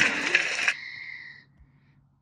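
A character voice's cry cuts off abruptly under a second in, leaving a high ringing tone that fades out within another second, then near silence.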